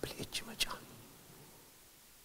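A man's voice trailing off in faint, whispery fragments for under a second, then a pause of near silence.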